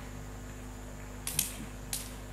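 Steady low electrical hum from a live sound system between spoken lines, with two short hissy clicks about a second and a half in and just before the end.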